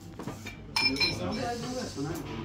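Tableware clinking on a dining table: dishes and glasses knocking together, with one sharp ringing clink about three-quarters of a second in, over low chatter.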